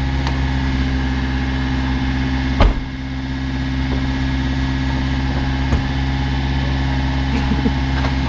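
A vehicle engine idling steadily, with one sharp knock about two and a half seconds in.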